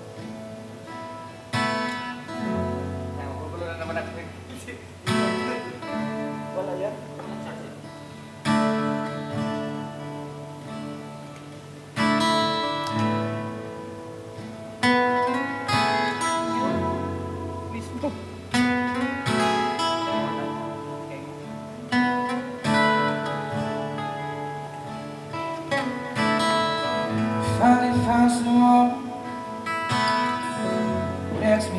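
Steel-string acoustic guitar played solo, chords struck and left to ring and fade, a fresh chord every two to three seconds.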